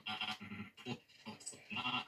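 A man's voice cut by editing into short, stuttering fragments of syllables, giving a wavering, bleat-like glitch in place of normal speech, with a brief lull about a second in.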